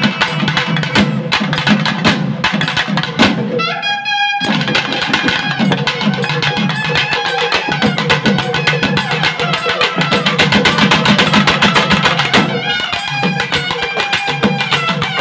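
Naiyandi melam: nadaswaram melody over fast thavil and hand-drum rhythm. The drumming breaks off for a moment about four seconds in while a wind note sounds, then the full ensemble comes back in.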